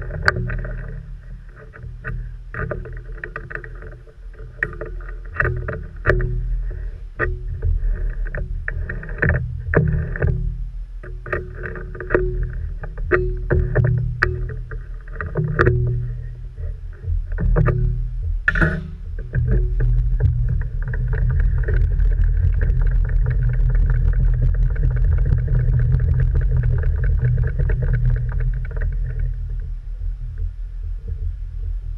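Metal clicks and knocks from a small metal lathe's four-jaw chuck as a bar is set and tightened, with the machine's drive humming in short bursts. About two-thirds of the way in, the lathe runs up and keeps running steadily.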